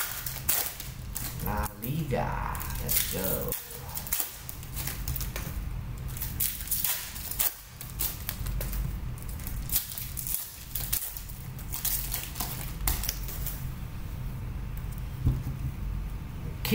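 Plastic-and-foil trading card pack wrappers being torn open and crinkled by hand, a run of many short crackles and rustles.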